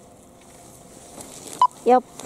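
Skis hissing on the snow, growing louder as the racer comes close. About a second and a half in there is a short high beep, then a loud shouted call near the end.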